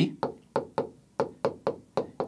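Stylus tapping and knocking on a large touchscreen display while writing by hand: a series of about seven short, sharp taps with quiet gaps between them.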